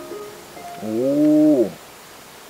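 A man's voice holding a drawn-out "ohh" sound for about a second, rising slightly and then falling away in pitch.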